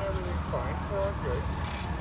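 A person talking indistinctly over the steady low rumble of city street traffic, with a brief hiss near the end.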